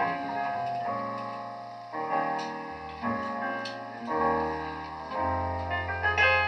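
Live band playing a quiet instrumental passage of a slow ballad: piano chords struck about once a second and left to ring, with low double bass notes coming in about halfway through and growing stronger near the end.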